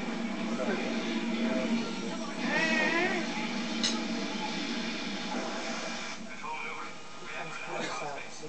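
Indistinct voices talking in the room, with a brief high sing-song voice wavering up and down about two and a half seconds in.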